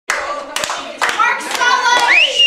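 Hands clapping in a steady beat, about two claps a second, with children's voices calling out over it.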